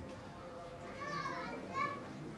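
Children's voices calling out while playing, with two short high-pitched calls, one about halfway through and one near the end.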